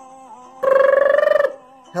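A man's voice mimicking a telephone ring: one held, buzzing, trilled note just under a second long, starting about half a second in.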